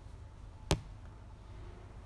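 A single sharp click about two-thirds of a second in, over a low steady rumble.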